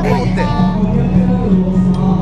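Live music from a stage performance, with a steady low note running underneath and a plucked-string sound.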